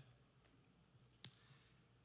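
Near silence: room tone, broken once by a single short, sharp click a little past the middle.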